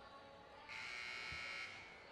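Arena scoreboard horn sounding one flat, buzzing blast of about a second that stops abruptly, signalling the end of the break before the fourth quarter.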